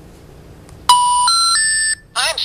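Novelty telemarketer-repellent sound machine toy playing the three rising telephone intercept tones (the special information tone heard before a 'number has been changed' recording), starting about a second in; the three steady beeps step up in pitch and the last is held.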